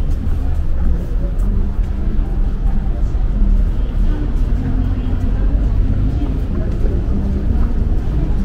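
Outdoor street ambience: a steady low rumble with people's voices talking indistinctly.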